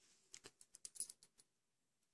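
Faint clicking of metal circular knitting needle tips working stitches: a quick run of about ten light clicks in the first second and a half.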